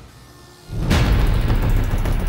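Dramatic film background score: it dips low for a moment, then comes back in loud and bass-heavy with a strike just under a second in.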